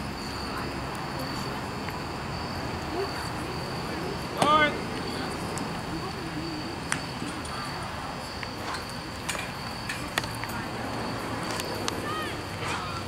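Crickets chirping steadily in one high, even tone, under a murmur of distant voices. About four and a half seconds in, one person gives a loud, short shout, and a few faint sharp knocks follow later.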